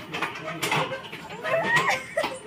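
Rooster crowing, one call that rises and then falls about one and a half seconds in.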